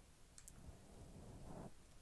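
Near silence with a low background hum, broken by a couple of faint clicks about half a second in.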